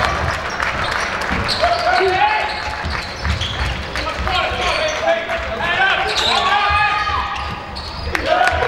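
Live basketball in a sports hall: the ball bouncing on the court, with players and spectators calling out, all echoing in the large room.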